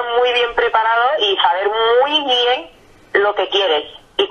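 Speech only: a woman talking in Spanish, with a short pause about three seconds in. Her voice is thin and cut off in the treble, like a telephone line.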